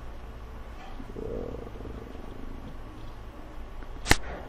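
Low, steady background hum, with a faint, indistinct sound rising briefly about a second in.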